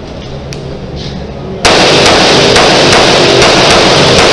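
Pistol fired in a rapid string indoors. After a moment of quiet with a faint click or two, the first shot comes about a second and a half in, and the quick shots that follow overload the recording so that the level stays pinned at its loudest.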